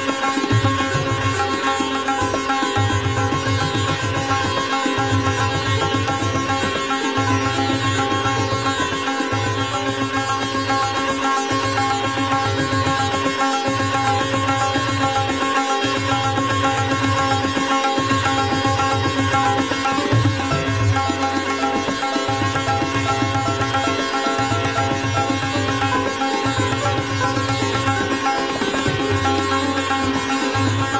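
Sitar playing a fast drut gat in Raag Puriya in teentaal: rapid plucked melody over a steady ringing drone, with a low beat recurring about every second and a half.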